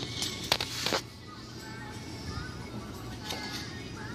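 A metal fork clicks twice against a ceramic bowl of crushed cookie crumbs, about half a second and a second in, over faint background music.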